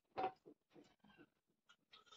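A short, wet slurp of liquid drunk from a small steel bowl, followed by a few faint mouth sounds.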